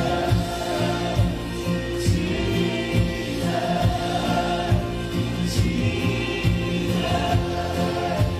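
Live worship band playing a song: acoustic and electric guitars, keyboard and drums keeping a steady beat, with voices singing over them.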